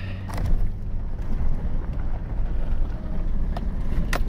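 Pickup truck in four-wheel drive heard from inside the cab, engine and tyres rumbling over a rough, snowy dirt road, with a few knocks and rattles from the truck.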